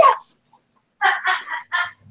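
Chicken clucking: four short, quick clucks about a second in.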